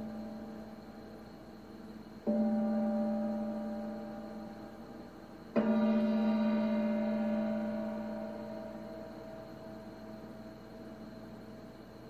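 A gong-like ringing tone, struck twice, about two seconds and five and a half seconds in, each strike fading out slowly over the decaying ring of the one before. The second strike is the louder and brighter.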